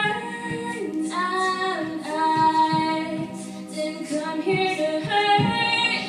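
A cappella group singing: a female lead voice carries the melody over held backing vocal chords, with vocal percussion keeping the beat.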